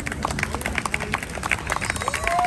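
Scattered hand clapping from a small group of listeners, irregular claps applauding the end of a street band's tune.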